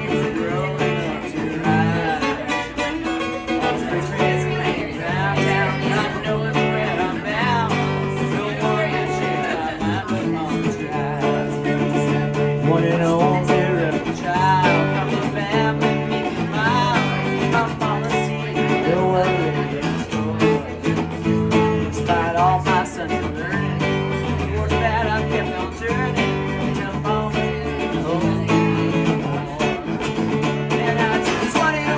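Acoustic guitar strummed steadily with a singing voice over it, a live solo country song performance.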